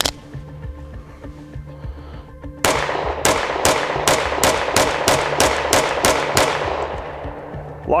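Strike One ERGAL 9mm pistol firing a rapid string of about a dozen shots, roughly three a second, beginning a little under three seconds in. The string ends as the magazine runs dry and the slide locks back. A steady music bed runs underneath.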